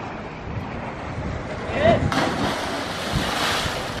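Wind on the microphone over sea surf at the foot of a cliff. A short call comes about two seconds in, and then a louder, brighter rushing hiss sets in.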